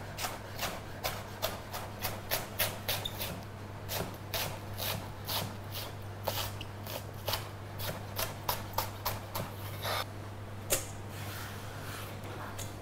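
Chef's knife cutting vegetables into fine julienne strips on a plastic cutting board: a quick, irregular run of knife taps, several a second, thinning out near the end. A low steady hum runs underneath.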